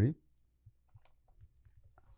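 Several faint, sharp clicks of a USB 3 flash drive being handled and plugged into a Lightning to USB 3 camera adapter.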